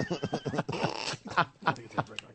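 Men laughing in a studio, choppy bursts of laughter mixed with a few broken words.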